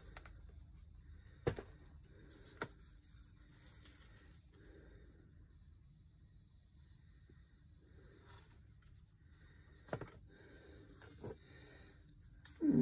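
Near silence: room tone, broken by four brief clicks or taps, two near the start and two near the end.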